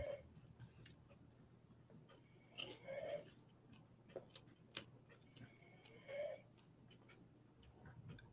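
Near silence: room tone with a few faint, brief sounds scattered through it.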